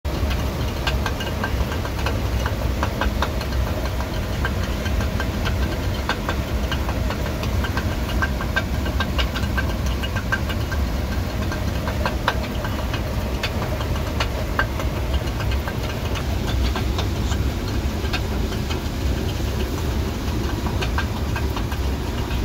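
Water-driven stone grain mill grinding maize: the millstone turns with a steady low rumble, and the wooden feeder stick from the hopper taps against the turning stone in rapid, irregular clicks.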